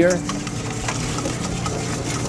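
A whisk beating a vinaigrette of olive oil and white balsamic vinegar in a stainless steel bowl: a steady scraping rattle as the dressing emulsifies to a creamy consistency. A steady low hum runs underneath.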